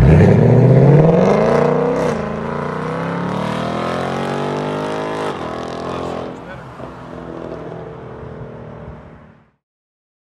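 2020 Ford Mustang GT's 5.0 Coyote V8, with an H-pipe in place of the resonators and the factory active-valve rear mufflers, accelerating hard away. The note climbs, drops at an upshift about 2 s in, climbs again to a second upshift a little after 5 s, then fades as the car drives off, and cuts off just before the end.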